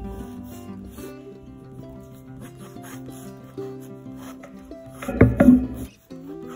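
Soft background music with held notes, over the light scratching of a Sailor Fude De Mannen fountain pen's bent nib drawing strokes on sketchbook paper. A louder scrape on the paper about five seconds in.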